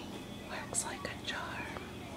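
Soft whispering, in a few short, faint breathy phrases over a low background hum.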